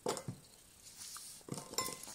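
A light clink at the start as a chocolate egg-shell half is set into a glass bowl. Near the end comes a cluster of small clicks and rattles as the yellow plastic Kinder Surprise capsule is handled and pried at.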